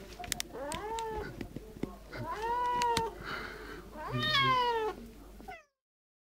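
A cat meowing three times, each meow rising and then falling in pitch, with a few sharp clicks near the start. The sound cuts off suddenly about five and a half seconds in.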